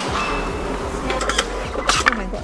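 A hand-turned metal display cylinder rotating with a mechanical rattle, with a few sharp clicks about a second in and again near the end.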